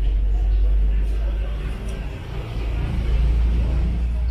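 Outdoor ambience: a steady low rumble, swelling and easing, with the voices of people walking past.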